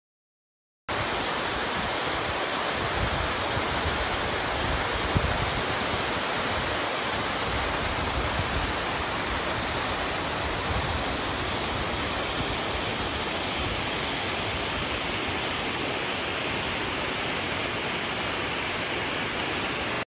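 Small waterfalls and cascades rushing steadily over rock ledges into a stream. The sound cuts in suddenly about a second in.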